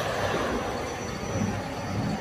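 Steady mechanical running noise of an automatic bottle filling and capping line, its conveyors and machinery running continuously.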